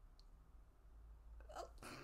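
Near silence: low room hum, then a woman's faint stifled laugh starting near the end.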